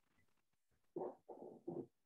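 Near silence, then about a second in a woman's voice makes three short, soft sounds, like a murmur or a quiet chuckle.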